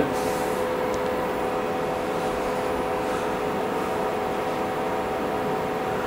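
Steady hum with a few constant tones from the powered-up CNC knee mill and its control, the axes standing still.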